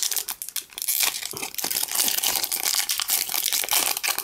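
Foil wrapper of a Pokémon booster pack crinkling and tearing as it is ripped open by hand, a dense run of small crackles and rustles.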